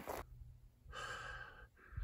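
A man's breathing, faint: one longer breath about a second in and a shorter one near the end.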